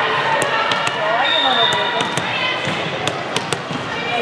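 A volleyball bounced several times on the hard court floor, sharp smacks amid the chatter of players and spectators.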